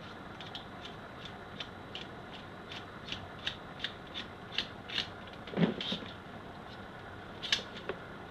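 Light metallic clicks and rubbing from the action of a Tomahawk pump-action shotgun as it is handled half open during disassembly: a scattered string of small ticks, with a louder click near the end.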